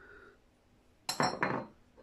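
A small ceramic spice bowl set down on a countertop among other bowls, giving a few quick clinks with a short ring about a second in, and a light tap near the end.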